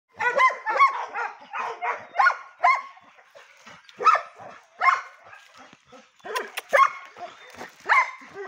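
Dogs barking during rough play: a quick run of high barks in the first three seconds, then single barks about a second apart. Two sharp clicks come a little after six seconds.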